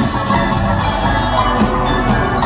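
A live band plays an instrumental passage, with electric guitar, upright bass, drums and harp, at a steady, loud level with held notes.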